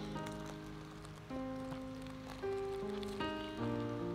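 Background music: slow, sustained chords that change every second or so, each starting sharply and then fading away.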